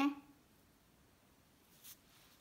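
Pizza-cutter wheel rolling through a thin round of rolled samosa dough, barely audible, with one faint brief scrape on the countertop near the end.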